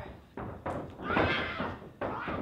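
Two sharp knocks on the wrestling ring, then a high-pitched, drawn-out yell from a female wrestler about a second in.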